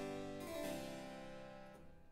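Harpsichord continuo chords in a baroque recitative: a chord is struck about half a second in and rings away, fading to almost nothing.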